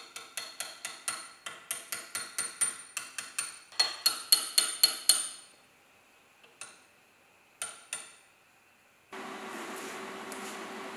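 Quick run of light, ringing metal-on-metal taps, about four a second for some five seconds: a short steel tube tapping a clamped square steel tube and plate into line for welding. A few single taps follow. Near the end a steady hum with a hiss starts up.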